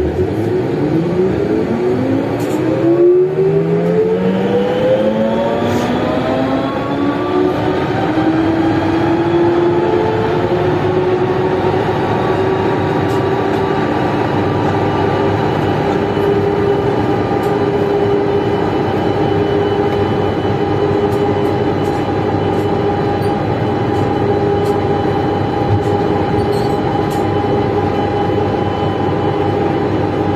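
Siemens VAL 208 NG rubber-tyred automatic metro train heard from on board: its motor whine rises in several tones together over the first eight seconds or so as the train gathers speed, then holds as a steady whine over the running noise at cruising speed.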